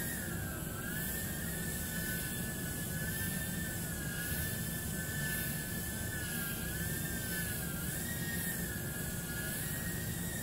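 JJRC H36 mini quadcopter's four small coreless motors and propellers whining in flight, the pitch wavering up and down about once a second as the throttle is worked.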